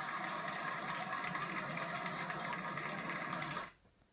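Applause and hand-clapping from a sitcom playing through a television's speaker, a steady even clatter that cuts off abruptly near the end when the channel is switched.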